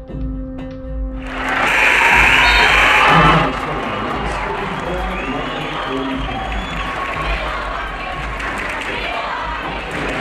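A gymnasium crowd breaks into cheering and applause about a second in, as the game ends; it is loudest for about two seconds, then carries on as steady crowd noise.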